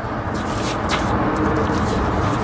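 Paper service invoices and a plastic document sleeve rustling as a stack of records is leafed through, with a brief crinkle just under a second in, over a steady background noise.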